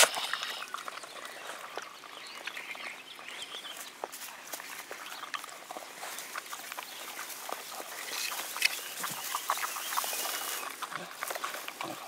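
Wolf pups licking and lapping frozen yogurt from a paper cup: a steady run of quick, wet clicking licks, with one sharp louder click right at the start.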